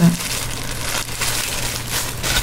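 Thin clear plastic food-handling gloves crinkling as gloved hands turn and handle a fried spring roll.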